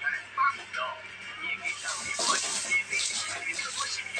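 Background music with voices from a television, and from about two seconds in a scratchy brushing as a hand sweeps back and forth across a woven floor mat.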